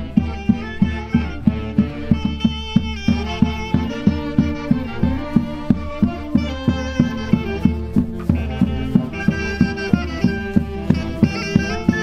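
Traditional Andean folk dance music: melody instruments over a steady, even beat of about three strokes a second.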